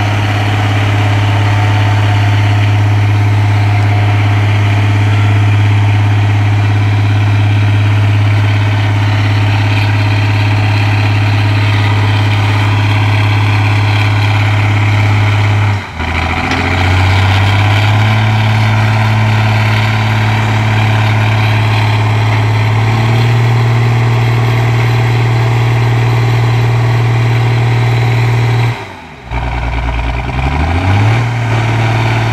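A bogged-down excavator's diesel engine running steadily. About halfway through the sound briefly drops out, the revs come back lower and then rise again in steps, and there is another short drop near the end.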